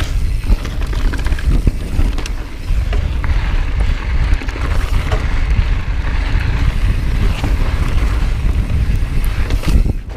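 Mountain bike rolling fast down rocky dirt singletrack: tyres on dirt and gravel under a heavy rumble of wind on the microphone, with scattered clicks and knocks as the bike rattles over rocks.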